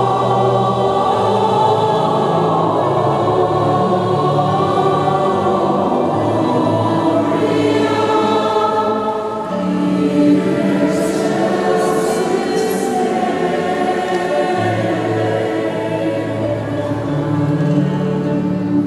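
Mixed choir of men's and women's voices singing sustained, slowly changing chords in a large church.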